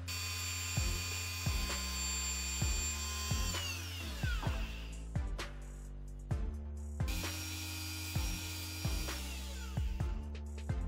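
Handheld rotary tool with a small sanding drum running at a steady high whine while sanding a PVC piece, then spinning down with a falling pitch about three and a half seconds in; it runs again for a couple of seconds near the end and winds down the same way. Background music with a regular beat plays throughout.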